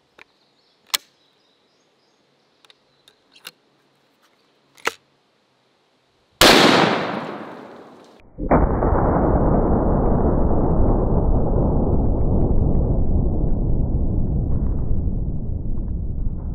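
A few sharp metallic clicks from a 500 Nitro Express side-by-side double rifle being handled and closed, then one very loud shot from it about six seconds in, dying away over a second or so. From about eight and a half seconds a long, steady rumble runs on with no high end: the shot's sound slowed down along with slow-motion footage.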